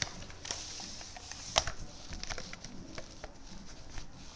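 Soft, light patter of a paintbrush dabbing paint onto a painted wooden table leg to blend in an accent colour, with one sharper tap about a second and a half in.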